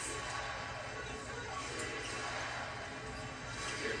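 Basketball arena crowd noise with music playing over it.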